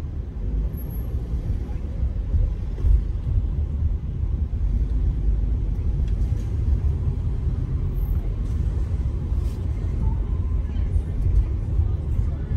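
Steady low rumble of a car driving along a city street, with road and engine noise.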